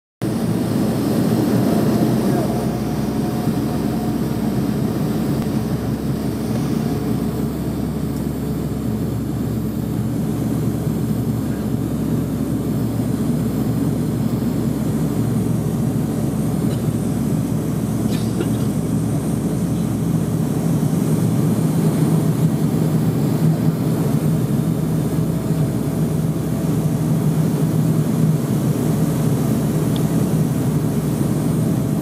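Cabin noise of a De Havilland Canada Dash 8 turboprop airliner on final descent: a steady drone of engines and propellers. About twenty seconds in, the propeller hum drops slightly in pitch and grows a little louder.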